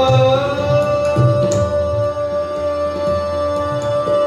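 Hindustani classical vocal with harmonium and tabla: a male voice holds one long steady note, reached by an upward glide, while tabla strokes keep time underneath.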